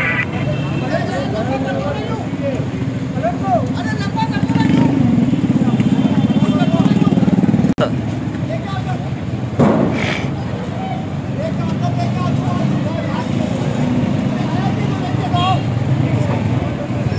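A truck engine running steadily under a crowd of men's voices, while a steel food-stall counter is heaved onto the truck. A single loud metal bang about ten seconds in as the counter is loaded.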